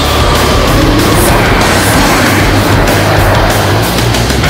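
Heavy rock music with the noise of a low-flying jet air tanker passing over, the rush swelling through the middle.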